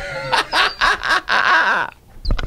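People laughing into studio microphones, in several short bursts of laughter.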